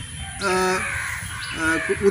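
A man's voice speaking Bengali: a short phrase about half a second in, and another starting near the end.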